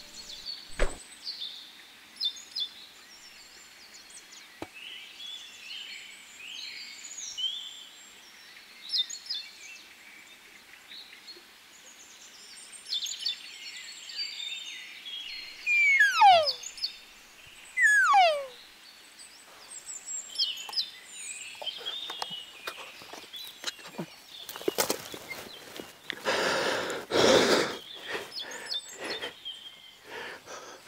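Elk giving two loud calls that slide steeply down in pitch, about sixteen and eighteen seconds in, over faint small-bird chirps. Near the end comes a burst of close rustling noise.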